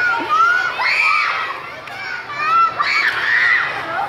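A group of young children shouting and calling out together in high voices, in two loud bursts.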